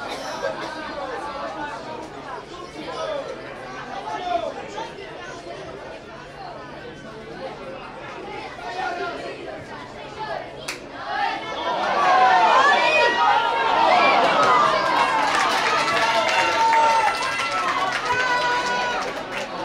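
Many voices talking and calling out at once, players and spectators at a youth football match, growing louder and busier about two-thirds of the way in. There is one sharp knock a little past halfway.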